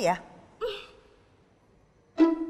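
The last word of a spoken sentence, then one short vocal sound from a person about half a second in. The rest is quiet.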